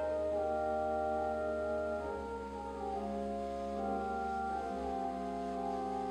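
Organ music: slow, sustained chords over a low held bass note, the harmony changing about every two seconds.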